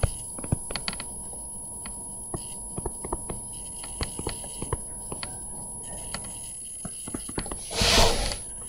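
Room noise in a pause between lecture sentences: scattered light clicks and taps over a steady low hum, with a short rush of noise just before the end.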